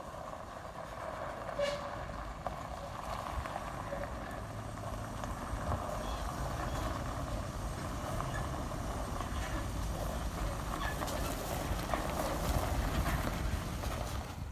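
Pickup truck towing a 40-foot shipping container on a dolly trailer across gravel: a steady engine and rolling rumble with a few scattered clicks and rattles.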